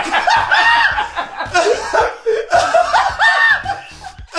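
Loud laughter: a voice laughing in repeated, high-pitched pulses.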